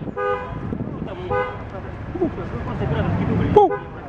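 A car horn sounds two short toots about a second apart, each a steady two-tone note. A man's voice calls out a short 'Pu!' near the end.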